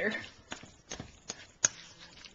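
A spoon stirring mashed cauliflower in a stainless steel mixing bowl, clicking against the bowl's side about five times, the sharpest click near the end.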